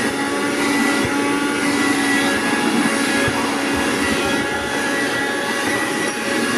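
Cordless 12-volt hand vacuum running steadily: a motor whine over the rush of its fan.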